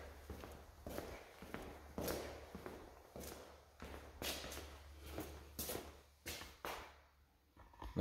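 Footsteps on a ceramic tile floor, faint, about two a second, with a low steady hum under most of it.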